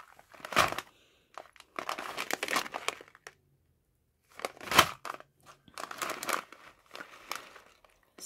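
Plastic-wrapped pouch of hard wax beads crinkling in irregular bursts as it is handled and turned over. There is a brief pause a little past the middle, and the loudest crackle comes about five seconds in.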